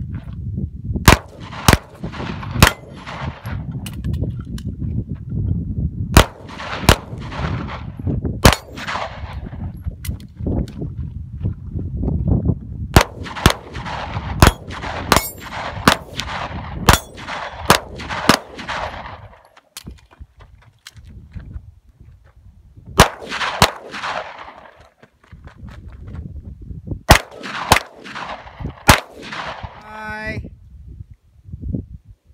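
Handgun fired in a timed string: about two dozen sharp shots, many in quick pairs and runs, with a lull of a few seconds about two-thirds of the way through before a last few shots.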